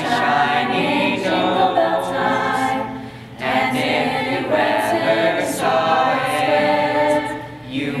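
Mixed high school choir singing a Christmas medley in harmony, in phrases with short breaks about three seconds in and near the end.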